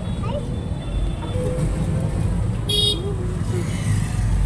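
Road noise inside a moving e-rickshaw: a steady low rumble of the ride and surrounding traffic, with a short vehicle horn toot near the three-second mark and faint voices in the background.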